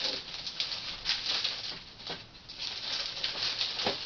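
Clear plastic bag rustling and crinkling in irregular bursts as it is handled.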